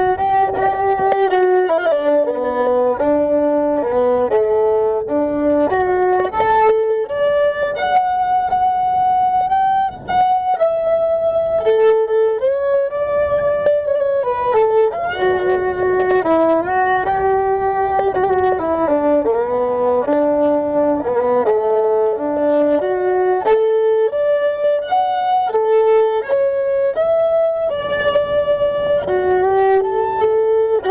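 Violin bowed up close, playing a melody of long held notes and quicker runs.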